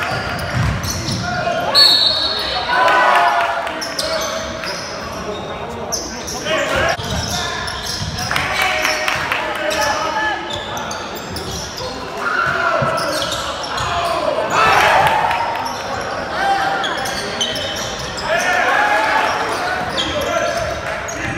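Basketball game sounds in a reverberant gym: the ball bouncing on the hardwood floor, sneakers squeaking and players and spectators calling out.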